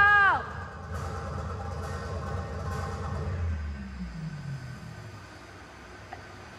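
The ending of a dance track: a held sung note drops away in the first half-second, leaving a low sustained tail with a falling low tone that fades out about four seconds in.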